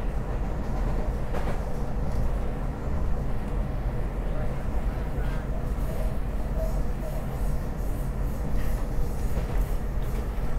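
Steady low rumble of a SEPTA Market-Frankford Line train running on its rails, heard from inside the car, with a few light clicks from the wheels and car body.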